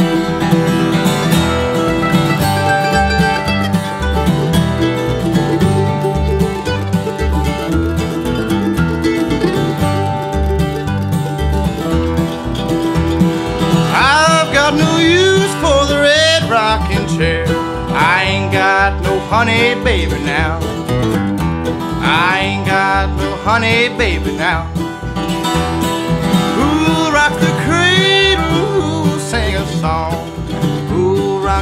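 Live acoustic bluegrass: steel-string acoustic guitar and mandolin over a steady bass line, playing an instrumental opening. A male lead vocal comes in about halfway through and carries on over the strings.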